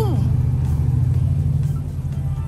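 A steady low motor-like hum, with a voice trailing off just at the start.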